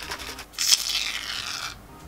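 Aerosol can of shaving foam shaken briefly, then dispensing foam with a hiss that starts about half a second in and lasts about a second.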